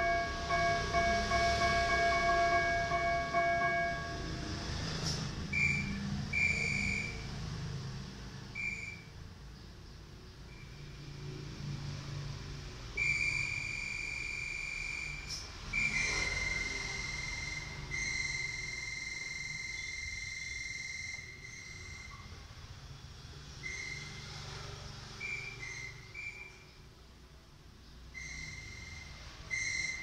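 Electronic keyboard playing with a whistle-like voice: a chord held for the first few seconds, then slow, sparse single high notes, some brief and a couple held for several seconds.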